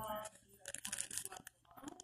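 Crackly crinkling and tearing sounds, densest from about half a second to a second and a half in, after a voice trails off at the very start.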